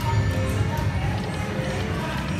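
Aristocrat Heart Throb video slot machine playing its short electronic spin tones as the reels spin on a 50-credit bet, over the steady din of the casino floor.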